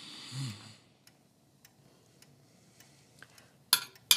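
Spoons and forks on china bowls at a quiet table: a few faint light clicks, then one sharper clink near the end.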